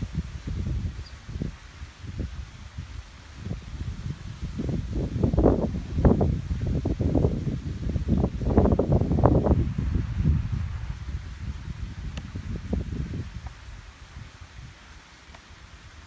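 Wind buffeting the microphone in uneven gusts, a low rumble that swells in the middle and dies down near the end, with leaves rustling in the tree overhead.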